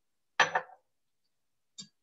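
A single sharp glass clink about half a second in, with a brief ring: a glass bottle knocked against the counter or the cocktail things as it is handled. A faint tick follows near the end.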